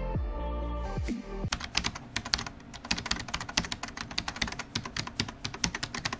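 Background music stops about a second and a half in, giving way to rapid clicking like typing on a computer keyboard, many keystrokes a second.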